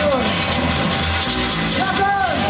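A live band playing electric bass and drums, with a man's amplified voice over a steady low bass line.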